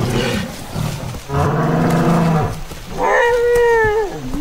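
Film sound-design calls of a herd of ceratopsian dinosaurs: a low, lowing bellow lasting about a second, then a higher, drawn-out call near the end.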